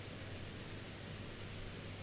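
A pause in a man's speech that leaves only steady background hiss with a low hum, unchanging throughout.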